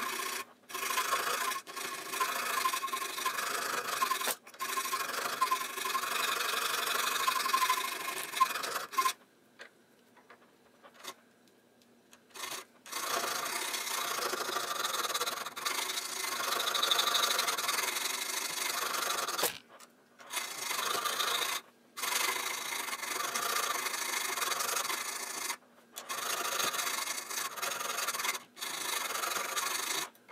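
A thin file rasping back and forth across a metal airsoft inner barrel, cutting a ring groove near its end. The filing comes in long runs broken by short stops, with a pause of a few seconds before the middle.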